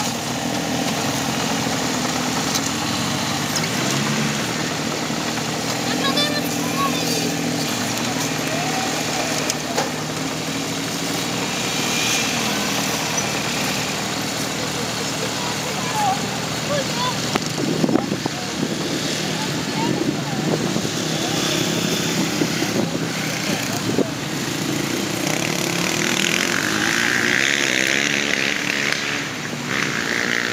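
Takeuchi TB125 mini excavator's diesel engine running while the boom and bucket dig, its pitch shifting as the hydraulics take load, with a few sharp knocks partway through.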